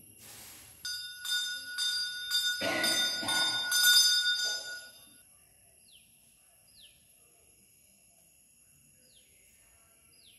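A brass temple bell rung in quick strokes, about two a second, its ringing tones building for around four seconds and then cut off. After that, a few faint short falling bird chirps.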